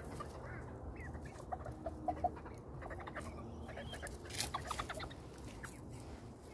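Chickens clucking softly while foraging on bare ground, with a few short clucks about two seconds in and some light scratching ticks.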